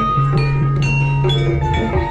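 Live gamelan music accompanying a jaranan dance: struck metal keyed instruments ringing out in quick notes over a long, low sustained tone, with drum strokes.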